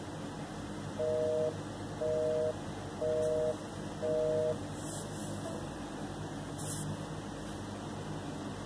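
Telephone busy signal heard through a smartphone's speakerphone: four half-second two-tone beeps, a second apart, starting about a second in and then stopping, over line hiss. The call is not getting through because the line is busy.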